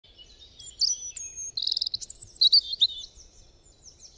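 Birdsong: high chirps and whistles, with a fast trill about one and a half seconds in, thinning out and fading near the end.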